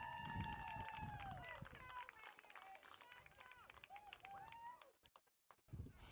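Faint, distant voices calling out across a rugby field, with one long drawn-out call that tails off about two seconds in.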